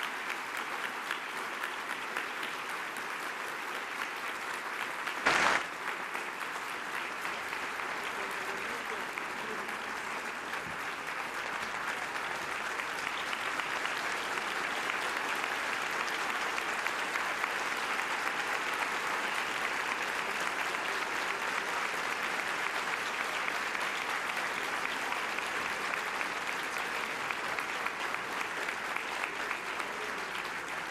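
Audience applauding steadily, swelling a little midway through, with one brief loud thump about five seconds in.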